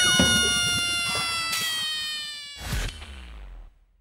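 End-screen outro sound effect: one long held tone that sinks slowly in pitch as it fades, with a short swoosh just before three seconds in; it stops shortly after.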